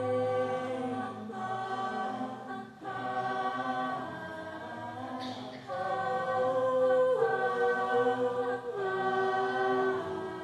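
An a cappella vocal ensemble sings sustained, wordless-sounding chords. The voices hold each chord for one to three seconds before moving to the next.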